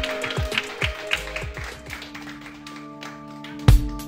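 Background music with held notes, over a small group clapping in the first couple of seconds; near the end a heavy drum beat comes in.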